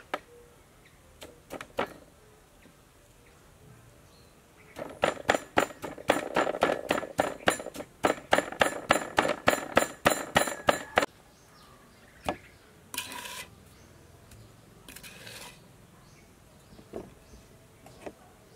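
Wooden pestle pounding garlic and red chili with sugar and salt in a clay mortar: a quick, steady run of strikes, about five a second, lasting some six seconds, then a few single knocks.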